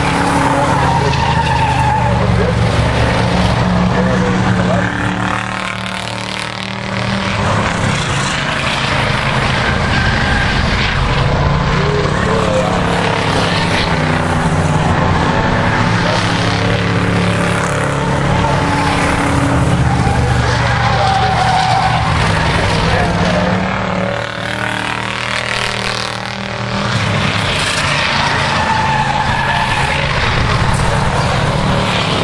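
A pack of old beater cars racing around a paved oval, their engines running loudly, fading briefly twice as the pack moves off. Short tire squeals come several times as cars slide through the corners.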